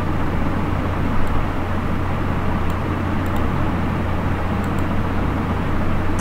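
Steady low electrical hum and hiss from an open microphone beside a computer, with a few faint paired clicks from a computer mouse.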